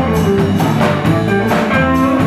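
Live blues band playing an instrumental passage: electric guitars and electric bass over a drum kit keeping a steady beat.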